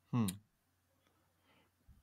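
A man's short 'hmm', falling in pitch, with a sharp click as it sounds.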